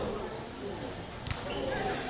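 Voices shouting across an open football pitch during play, with a single sharp thud about a second in.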